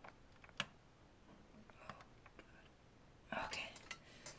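Faint light clicks of the metal tweezers of an Operation game against the plastic board as a piece is picked out, the sharpest about half a second in. Near the end, a brief throat-clearing sound.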